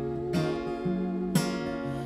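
Acoustic guitar played solo: a chord is struck about once a second, with bass notes picked in between.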